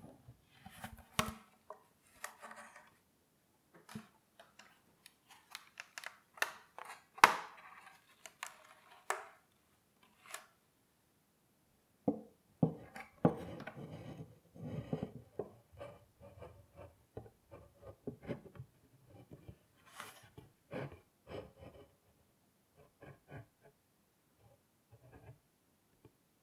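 Wooden chess set being handled: a series of irregular wooden clicks, taps and knocks, sharpest about seven seconds in, with a busier stretch of rubbing and knocking from about twelve to sixteen seconds and sparser light taps after.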